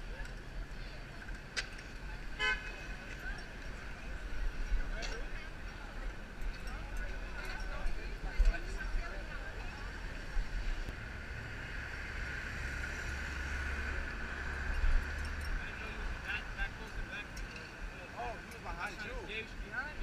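City street traffic at an intersection: cars running through, one passing close and louder a little past halfway, with a car horn tooting.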